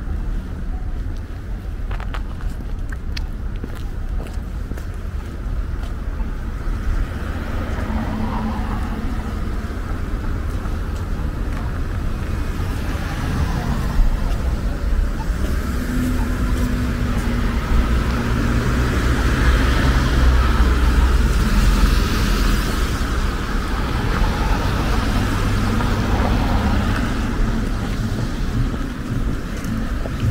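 City street traffic: cars driving past, the engine and tyre noise building to its loudest about two-thirds of the way through, over a steady low rumble.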